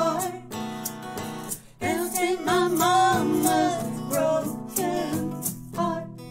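Two women singing a song together in harmony, accompanied by strummed acoustic guitars, with a short pause between sung lines just before two seconds in.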